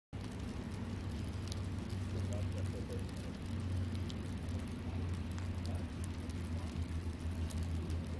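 Steady outdoor background noise: a low hum with a hiss over it and scattered faint ticks.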